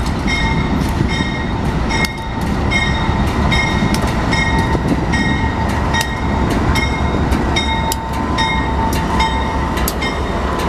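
Union Pacific freight train with diesel-electric locomotives passing close by, a steady heavy engine rumble under the rolling of the wheels. Over it a bell rings in an even rhythm, a little under twice a second.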